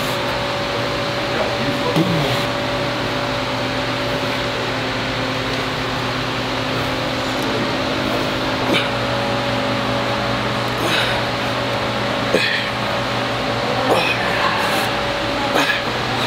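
Steady gym room noise, a constant hum with faint tones, with a few light clicks spread through the second half.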